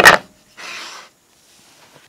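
A sharp wooden knock as a small plywood backer-board insert is handled at its recess in a plywood drill press table. About half a second later comes a brief scrape of wood rubbing on wood.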